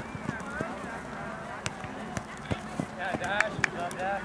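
Soccer players running and playing the ball on artificial turf: scattered footfalls and sharp ball strikes, mostly in the second half, under distant shouting voices.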